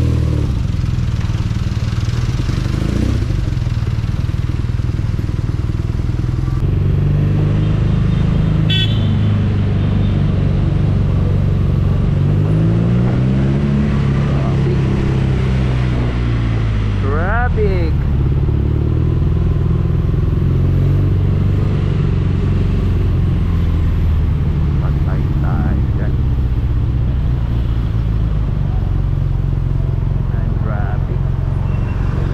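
Motorcycle engine running as the bike pulls away and rides through slow traffic, its pitch rising and falling as it speeds up and eases off, most clearly in the middle stretch.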